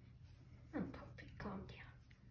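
A woman's soft whispering voice: two short sounds, the first a quick fall in pitch just under a second in, the second longer and rising near the end.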